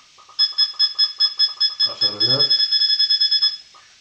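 Tornado V9 UHD satellite receiver's signal-beep, used for aligning the dish: a rapid series of short high beeps, about seven a second, running closer together near the end before stopping. The beep sounds because a satellite signal is being received, and it is stronger the stronger the signal.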